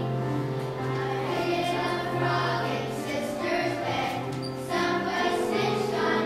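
Children's choir singing a song in sustained notes, over a low, steady accompaniment line.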